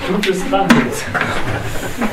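Indistinct talk among a small group of people, with a few sharp knocks and handling noises as they move about, scattered through the two seconds.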